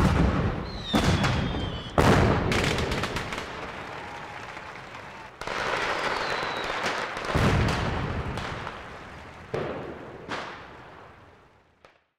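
Fireworks going off: a string of about six sudden bangs, each trailing off, with two short high whistles from rockets, fading away near the end.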